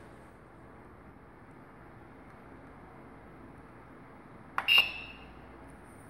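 A click and a single short, high beep from the CNC's LCD controller buzzer, about four and a half seconds in, as its menu knob is pressed; otherwise faint room hiss.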